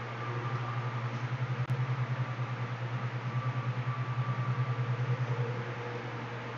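A low, pulsing mechanical hum, like a motor running, that swells about a second in and eases off near the end, over a steady background hiss.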